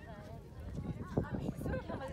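Young women's voices talking and calling out, with a low rumble of wind on the microphone and a few sharp knocks about a second in.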